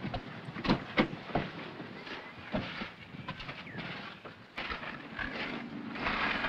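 A car door being opened and shut as someone gets out of a parked car: a few short knocks and clicks over quiet outdoor background noise.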